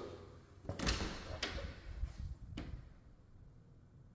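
An interior door's knob and latch clicking as the door is opened, with a few soft knocks: about three faint clicks spread over the first three seconds, the sharpest about two and a half seconds in.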